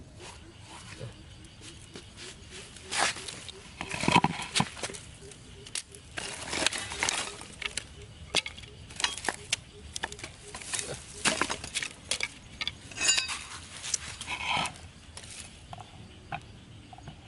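Irregular clicks, knocks and clatter of hand work: thin bamboo sticks knocking together and a knife chopping and splitting them on a round wooden cutting board, with scattered sharper clacks.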